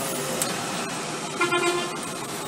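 Steady road and traffic noise heard from a moving bus, with a short vehicle horn toot about one and a half seconds in.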